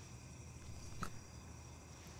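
Quiet room tone: a steady low hum with one faint short click about a second in.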